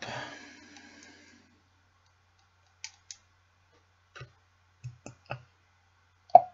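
A few faint, sharp clicks spread over the second half, from small plastic parts being handled as an e-liquid bottle is readied to fill a rebuildable tank.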